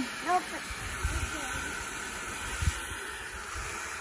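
Garden hose spray nozzle, on its shower setting, running water into a filled plastic water table: a steady splashing hiss with a few low bumps.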